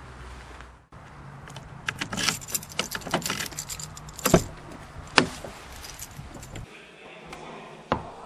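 Car keys jangling in a hand as a series of small metallic clicks, followed by two loud sharp knocks about a second apart from the car's door or lock.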